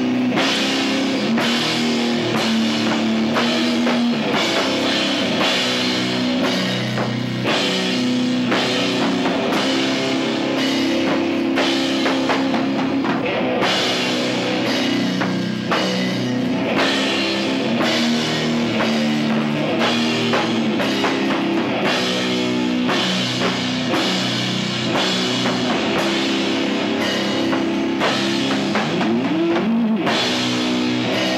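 Sludge metal band playing live: heavily distorted guitar and bass hold long, low chords over a drum kit's steady hits and cymbal crashes. The sound is loud and dense throughout.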